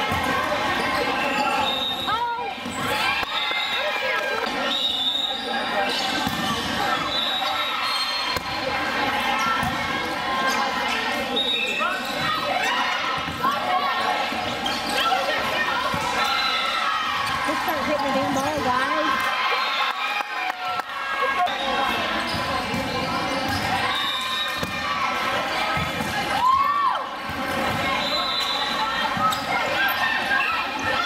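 Indoor volleyball rallies in a large gym: the ball being struck and bouncing, amid a constant mix of players' and spectators' voices calling out, with the echo of the hall.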